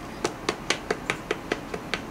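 A rapid, even run of light clicks or taps, about four to five a second.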